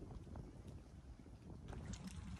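Faint, uneven low rumble of wind buffeting the microphone.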